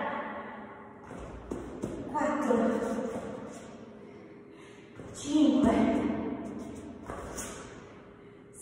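A woman's voice speaking briefly twice, echoing in a large hall, with a couple of soft thumps about a second and a half in.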